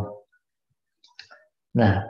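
A man's voice over a video call: a trailing 'uh', a pause with a few faint short clicks about a second in, then 'nah' near the end.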